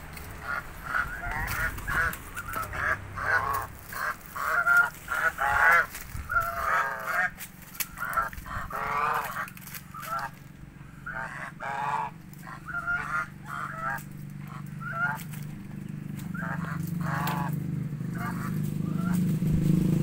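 A pair of domestic geese honking over and over, short calls one or two a second. In the second half a low engine hum grows steadily louder.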